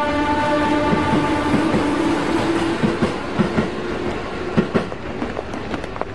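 Commuter train running along the track, its wheels clacking irregularly over the rails under a steady pitched tone that fades away over the last couple of seconds.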